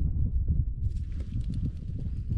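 Wind buffeting the microphone in an uneven low rumble, with a higher rustling hiss joining about a second in.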